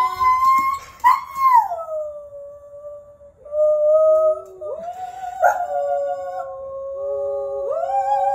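A dog howling in long drawn-out notes that glide down and then hold steady, with a woman singing held notes alongside it; for much of the second half the two voices sound together at different pitches.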